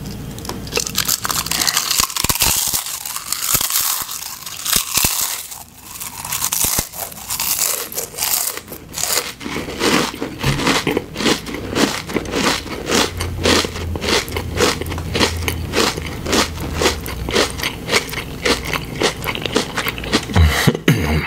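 Close-miked crunching of ridged potato chips. Dense, loud crunching of bites comes first; from about halfway on it turns into steady chewing at about two to three crunches a second.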